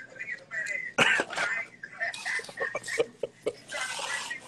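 Indistinct, low speech, with a short sharp burst of sound about a second in.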